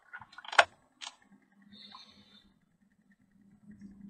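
A few sharp clicks and knocks of cables and connectors being handled and plugged in during the first second, then a faint steady low hum as the coil generator drives the mat, growing a little near the end.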